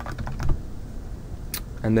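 Computer keyboard typing: a quick run of keystrokes in the first half second, then a single sharper click about a second and a half in.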